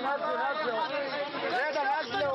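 Several voices talking over one another in Arabic, one repeating "nazzlo" ("bring him down") again and again.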